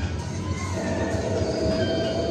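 Arcade racing game's car engine sound running over the general noise of an arcade, with a steady tone coming in under a second in.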